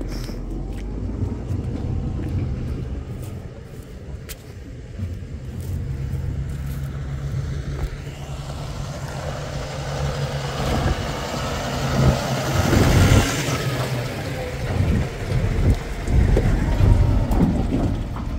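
Red Case IH tractor engine running as it drives up the track pulling a green trailer. It grows louder as it approaches, loudest about two-thirds of the way through, and stays loud as it passes close by.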